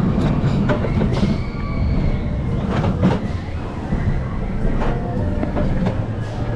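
Mack Rides Wild Mouse coaster car rolling along its steel track, wheels giving a steady low rumble with scattered clicks and rattles.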